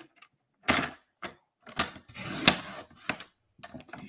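Paper trimmer cutting a stack of patterned paper: a few clicks and taps as the paper and cutting bar are set, then about two seconds in the blade scrapes through the paper for half a second, ending in a sharp click.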